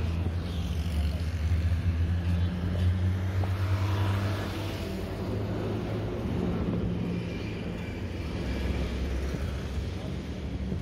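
Road traffic: a steady low engine drone from a motor vehicle on the move, with the noise of surrounding cars; the drone weakens about halfway through.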